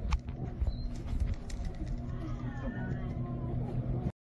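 Phone-camera handling rustle and footstep thumps as the phone is carried through a shop, over a steady low electrical hum and faint background voices.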